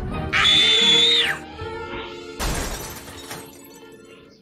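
Cartoon sound effects over background music: a shrill, steady high-pitched sound lasting about a second near the start, then a sudden crash-like noise about two and a half seconds in that fades away.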